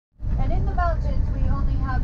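Steady low road-and-engine rumble of a car driving, heard from inside the cabin, with a person's voice speaking over it.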